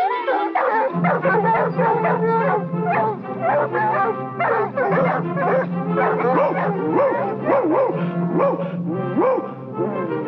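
A pack of cartoon hounds barking, yelping and howling over an orchestral score. The rising-and-falling howls come thick and fast in the second half.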